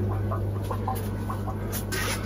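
Steady low hum of fish-room electrical equipment, with short faint chirps over it and a couple of sharp clicks near the end.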